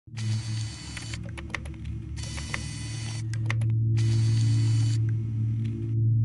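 Sci-fi sound design: a steady low electronic hum with three bursts of static, each about a second long and cutting off sharply, and scattered clicks between them.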